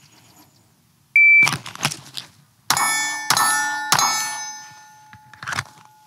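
Shot timer start beep, a rustle as the handgun is drawn from a zipped fanny pack, then three pistol shots about 0.6 s apart, the last landing about 2.8 s after the beep. Each shot leaves a long metallic ring that fades slowly.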